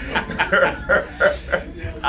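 Two men laughing together in short, repeated pulses.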